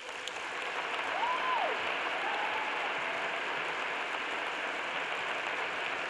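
Large audience applauding, swelling in the first second and then holding steady, with one brief high rising-and-falling call from the crowd about a second in.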